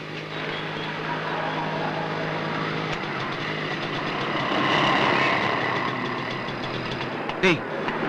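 Busy city street traffic: motorcycle and auto-rickshaw engines running, with a steady low engine hum and general street noise that swells a little around the middle.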